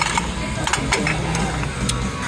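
A few light clinks of ceramic plates and saucers being handled on a wire shelf, over background music and faint voices.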